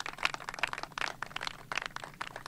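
Small audience clapping: a thin, scattered patter of many hands in the open air.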